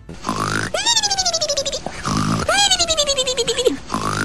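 Cartoon-style snoring: a raspy snort followed by a long, falling, fluttery whistle, heard twice, with a third snort starting at the very end.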